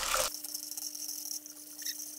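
Eggs sizzling in hot oil in a frying pan while being stirred with chopsticks into a scramble. About a third of a second in, the sizzle turns to a quieter, thin high hiss with a faint steady hum under it.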